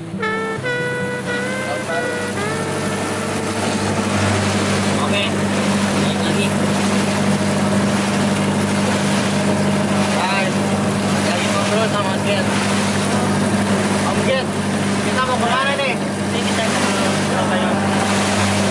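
A motorboat's engine running with a steady low drone while the boat is under way, with water rushing along the hull. Voices and laughter come through over it now and then, and background music fades out in the first couple of seconds.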